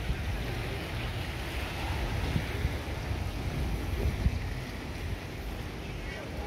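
Wind buffeting the microphone in a low, uneven rumble, over a steady rush of sea surf.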